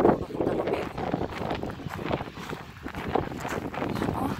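Wind gusting across the phone microphone, rumbling and buffeting unevenly while the person walks.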